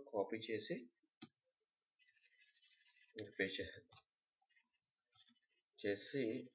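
Computer keyboard keys clicking in a quick, faint run, with a single sharp click about a second before it. The keystrokes enter code into the editor.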